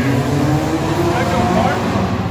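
A car engine running in a concrete parking garage, its steady note easing off in the first moments, with people talking over it.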